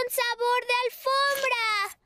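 A cartoon child character's high-pitched voice speaking Spanish in a sing-song way, the speech stopping just before the end.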